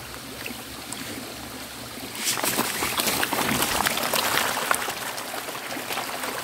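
Water trickling steadily into a fish tank, then about two seconds in a burst of rapid splashing as a crowd of hungry tilapia strike at feed pellets on the surface, carrying on to the end.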